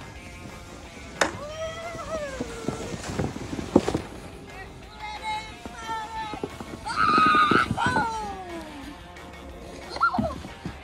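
Children's high shouts over background music: two long cries that rise and then slide down in pitch, one about a second in and a louder one around seven seconds in, with a few short knocks between them.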